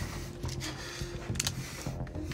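A few short plastic clicks and light rubbing as a test swab is handled and fitted into a handheld hygiene-swab meter, the clicks coming about two-thirds of the way through.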